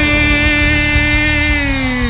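Live technocumbia band: one long held note with a buzzy edge, sagging slightly in pitch and falling off at the end, over steady bass and drums.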